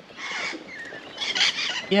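Lorikeet giving two harsh screeching calls about a second apart.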